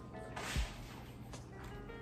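Faint background music with a brief wet sucking or slurping sound about half a second in, from a lemon wedge being sucked.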